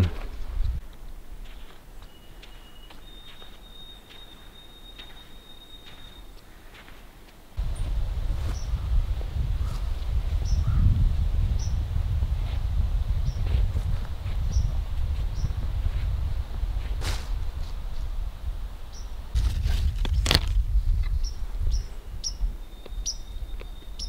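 Outdoor wilderness ambience with small bird chirps; a thin high note is held for a few seconds early on. About a third of the way in a loud, uneven low rumble of wind on the microphone starts suddenly, with a short high chirp repeating about once a second over it and a few sharp clicks near the end.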